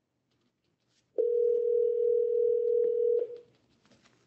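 Telephone ringback tone: a single steady two-second tone, the sign that an outgoing call is ringing at the other end and has not yet been answered.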